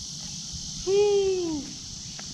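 Insects buzzing steadily in a high, even chorus. About a second in, a single drawn-out vocal call lasting under a second rises slightly and then falls in pitch.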